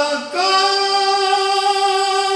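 A solo voice singing a naat unaccompanied. Just after the start the voice breaks briefly, then moves up to a high note and holds it steadily.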